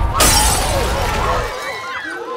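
A glass-topped coffee table shattering as a person falls onto it: a sudden loud crash of breaking glass just after the start, dying away over about a second and a half over a low rumble. Gasps and cries from onlookers follow.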